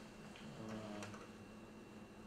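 A quiet pause in a small room: room tone with a faint, indistinct voice murmuring about half a second to a second in.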